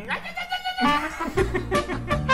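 A wavering, voice-like cry that rises in pitch at the start, then comes in several short wobbling calls.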